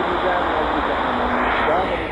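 Sony ICF-7600D portable radio receiving a weak AM medium-wave broadcast on 1368 kHz through its speaker: a faint voice buried under heavy, steady static hiss.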